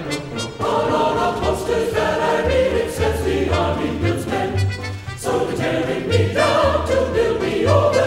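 Army band and choir music: the chorus sings held chords over a band accompaniment with a steady, repeating bass line.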